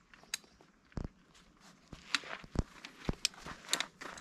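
Irregular light clicks and knocks of equipment being handled, more frequent in the second half.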